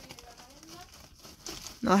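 Faint crinkling and rustling of plastic wrappers and bags in a plastic bin, stirred by a pet ferret moving about among them.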